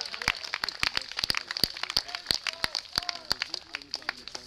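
Steel plate armour and weapons clinking and clanking in rapid, irregular metallic clicks as armoured fighters move and spar.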